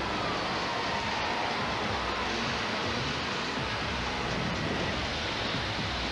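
Robot combat battle soundtrack: a steady, dense rush of arena noise with background music underneath.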